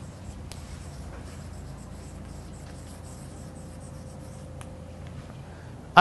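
Chalk writing on a blackboard: faint scratching with a few light taps of the chalk as the words are written.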